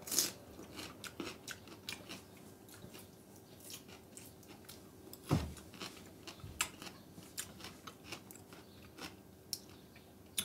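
A person biting into and chewing a piece of fresh, ripe pineapple: a faint, irregular run of small wet crunches and clicks. One louder knock comes about five seconds in.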